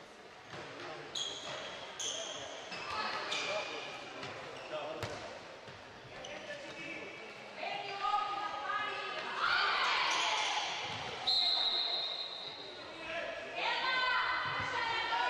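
Handball match play in a sports hall: the ball bouncing and slapping on the wooden court, with players shouting to each other, echoing in the hall. A shrill steady high tone sounds for about a second around eleven seconds in.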